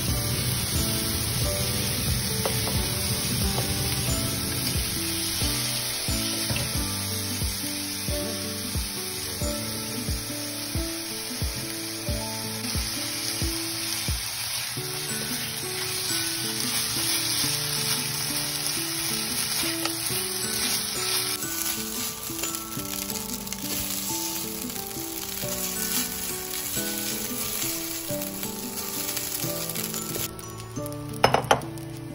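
Cooked rice sizzling steadily as it is stir-fried in a hot nonstick frying pan, with a spatula turning it over.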